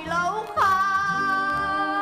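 Song from a 1960s Hebrew stage musical: a singing voice moves briefly in pitch, then holds one long note from about half a second in, over instrumental accompaniment.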